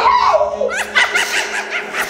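A young girl laughing: a falling cry at first, then a quick run of short, high laughs about a second in.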